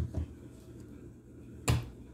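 Mayonnaise jar set down and handled on a kitchen countertop: two light knocks at the start and a sharper knock near the end.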